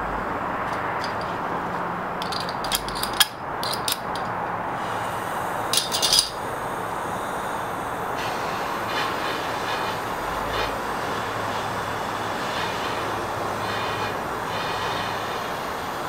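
Handheld propane torch burning with a steady hiss, its flame heating a steel go-kart axle stub to harden it by quenching. A few sharp clicks come in the first six seconds.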